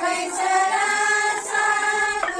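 Music: a song with singing voices holding long notes.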